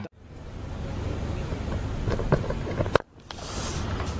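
Cricket ground ambience on the broadcast field microphones: a steady rushing noise, with a sharp knock about three seconds in and a brief dropout just after it.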